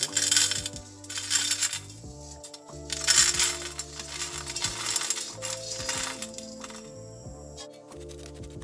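Small gold-plated metal connector pins being poured into an empty glass beaker, rattling and clinking against the glass in several pours of about a second each, stopping about six seconds in.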